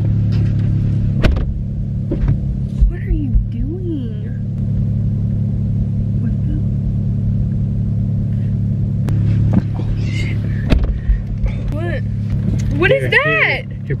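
Car engine idling steadily, heard from inside the cabin as a low hum, with a sharp knock about a second in and a couple more near the end.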